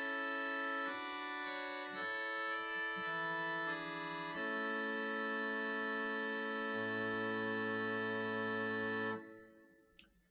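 Virtual pipe organ sounding the Hope-Jones organ's viol d'orchestra, a loud, keen string stop, playing sustained chords rich in overtones. A low bass note joins about two-thirds of the way through. The chord is released about nine seconds in and dies away in reverberation.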